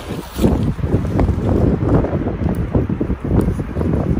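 Wind buffeting a handheld phone's microphone, a loud, uneven low rumble, with fingers rubbing on the phone close to the mic.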